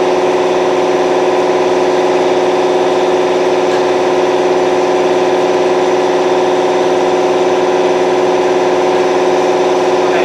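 A machine running steadily: an even, unchanging mechanical drone with a strong pitched hum.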